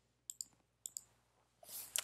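Faint computer mouse clicks advancing a presentation slide: two quick press-and-release pairs about half a second apart.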